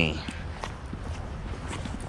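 Footsteps on pavement at a walking pace, with a steady low rumble underneath.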